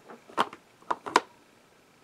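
Hard clear plastic stamp-set case being handled and turned in the hands, giving a few sharp clicks and taps, the strongest about half a second in and a pair at about a second.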